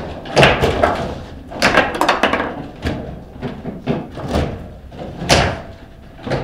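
Table football in play: a run of sharp, irregular knocks and clacks as the figures on the rods strike the ball and the rods bang against the table. The loudest knock comes near the end.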